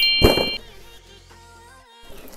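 A sound effect added in editing: a bright ding and a sharp clang-like hit at the start, followed by a fainter ringing tone that fades and cuts off suddenly near the end.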